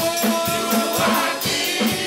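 Gospel praise music with voices singing together over a steady beat, and the congregation clapping along.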